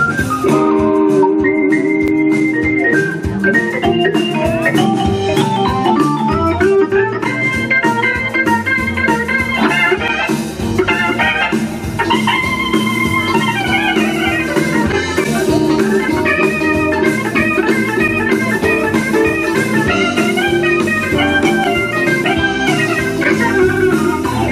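Live rock and roll band in an instrumental break: an organ solo on a Korg Triton keyboard, fast runs of notes over a held chord, with drums and electric guitar behind.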